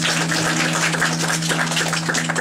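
Audience clapping as the song ends, with a low electric guitar note still ringing steadily underneath.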